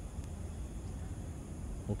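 Low, steady outdoor background rumble picked up by a phone's microphone while filming at night.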